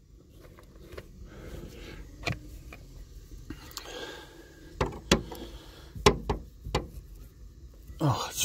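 Irregular clicks and knocks of hard plastic car interior trim being worked with a pry tool while push-in plastic rivets are removed from the rear deck panel, the loudest knocks coming about five to seven seconds in.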